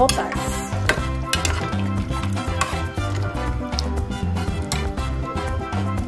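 A long spoon stirring soup in an enamel pot, with a few sharp clicks of the spoon against the pot, under background music with a steady bass beat.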